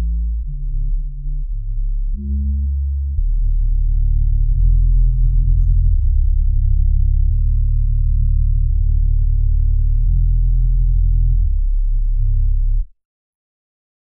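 Isolated bass line of a pop song: deep sustained notes that change pitch every second or so, growing louder about three seconds in, then stopping abruptly about a second before the end.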